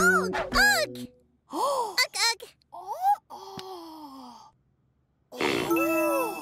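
Cartoon character voices making wordless sounds: short rising-and-falling calls over light music, then a long falling groan. After a brief silence, a new held musical chord starts near the end.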